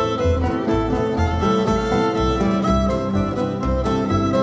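Live acoustic folk band playing an instrumental passage: fiddle carrying the melody over strummed acoustic guitar and upright bass, the bass marking a steady beat about twice a second.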